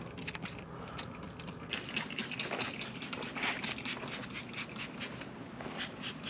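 Trigger spray bottle misting water onto a bicycle in several short squirts, mixed with irregular small clicks and crackles from handling.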